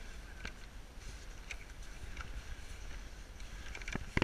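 Footsteps sinking into soft, knee-deep snow, a few irregular steps about a second apart, over a steady low rumble of wind on the microphone.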